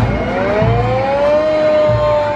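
Fire truck siren winding up: a wail that rises in pitch for about a second and a half, then holds nearly steady.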